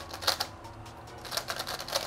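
A GAN Skewb M Enhanced magnetic skewb puzzle turned quickly by hand: a run of light plastic clicks and clacks as its layers are turned, bunched about a third of a second in and again through the second half.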